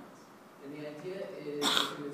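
A man talking through a microphone and PA in a hall, his words not made out. About one and a half seconds in comes a short, sharp, hissing burst, the loudest sound here.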